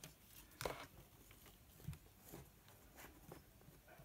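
Near silence, with a few faint knocks and clicks from a plastic handheld mini fan being handled and set down; the loudest comes just under a second in. No fan motor is heard running.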